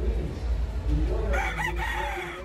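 A gamefowl rooster crowing, starting a little past halfway and still going at the end, over the low hum and murmur of a crowded hall.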